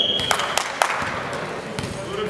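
A short referee's whistle blast ends about half a second in. Then a volleyball is bounced on the sports-hall floor a few times, each thud echoing in the hall, as the server readies to serve.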